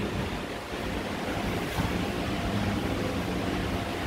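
Steady rushing background noise with no clear events in it.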